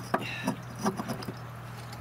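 A few sharp clicks and knocks, the loudest just after the start, as an Opel Zafira's failed water pump, its plastic impeller broken apart, is worked loose by hand and pulled out of the engine block.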